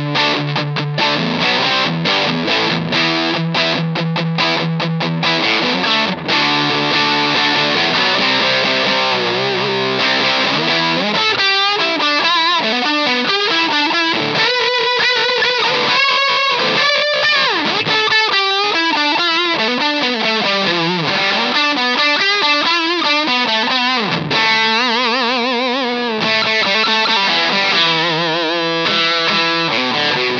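Fender American Professional II Jazzmaster electric guitar played through a Thorpy FX Fallout Cloud fuzz pedal straight into the amp, giving a heavily fuzzed tone. It opens with choppy chord stabs, then moves to held chords and lead notes whose pitch wavers from about ten seconds in.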